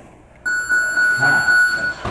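Electronic gym round-timer buzzer sounding one steady, loud, high tone for about a second and a half, starting about half a second in and cutting off suddenly.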